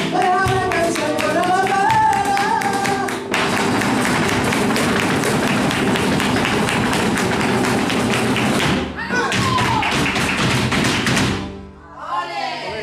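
Live flamenco: a sung cante line over guitar and percussive clicks for about the first three seconds, then a dancer's rapid zapateado footwork with hand claps drumming densely for most of the rest. A short vocal call comes about nine seconds in, and the footwork stops abruptly just before the end.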